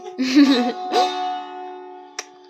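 Bağlama (long-necked Turkish saz) strummed twice in the first second, its strings then ringing on and slowly fading.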